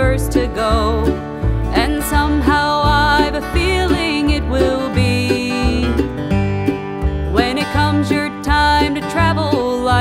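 Bluegrass band playing an instrumental break between sung verses: plucked acoustic string instruments carry the melody over a steady bass pulse of about two notes a second.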